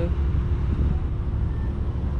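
Steady low rumble of parking-lot background noise, with a faint steady hum.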